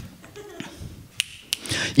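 A quiet pause in a small room with a faint low murmur and two sharp clicks, a little after a second in, about a third of a second apart.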